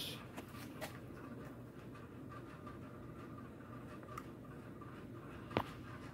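Quiet room tone with a few faint clicks and one sharper click near the end.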